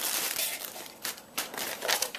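Plastic air-pillow packing crinkling and rustling as it is pulled out of a cardboard shipping box by hand.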